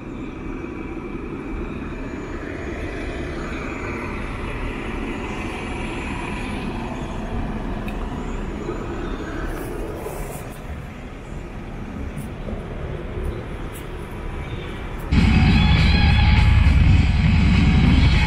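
Street traffic going by, cars and buses passing. About fifteen seconds in, loud music cuts in abruptly.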